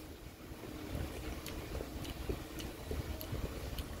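Low, steady background rumble of room noise with a few faint ticks, heard in a pause between speech.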